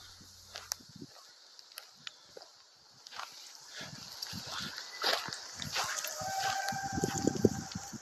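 Rustling steps on a dirt forest path, then near the end a faint, steady, drawn-out cry held for about two seconds. It is the strange, seemingly unnatural noise the walker hears coming from the woods, of unknown origin.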